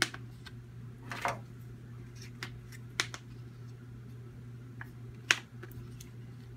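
Paper pizza-slice cutouts being pressed and tapped into place on a small whiteboard: a handful of sharp taps and clicks, the loudest about five seconds in, over a steady low room hum.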